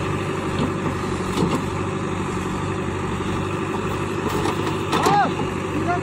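JCB 3DX backhoe loader's diesel engine running steadily as the backhoe arm digs and lifts earth, with a few faint knocks.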